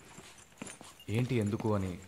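Footsteps on a wooden floor, heard as a few scattered clicks. About a second in, a man's voice sounds for about a second: a short utterance with no clear words.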